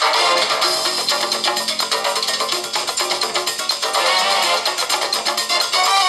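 Music with a fast, steady beat.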